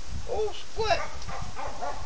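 Border collie puppies giving several short, high-pitched yips in quick succession.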